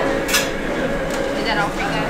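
Fast-food restaurant ambience at the order counter: a murmur of voices with two sharp clinks of dishes or utensils, the first about a third of a second in and the second about a second in.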